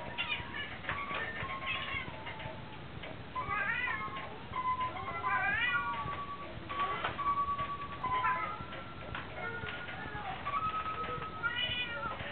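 Children's electronic toy keyboard being pressed by a toddler. It plays steady electronic notes, each held for about a second, mixed with several cat-meow sounds that rise and fall in pitch.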